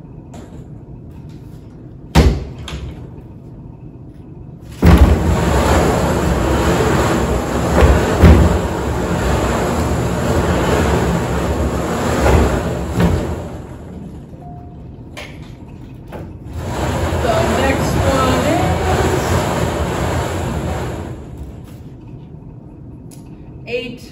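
Wooden raffle drum being turned, the tickets inside tumbling with a rushing noise in two long spells, the first starting about five seconds in and lasting some eight seconds, the second shorter. A single knock comes about two seconds in.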